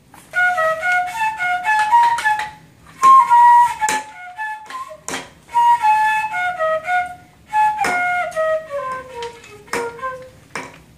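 Bamboo flute playing short runs of clear stepping notes, pausing briefly in the middle and ending on a long falling run. Several sharp knocks are heard over it from the baby striking a bamboo flute like a drumstick.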